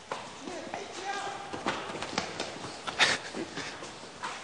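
Quick, irregular running footsteps and knocks on a hard walkway, with a louder knock about three seconds in.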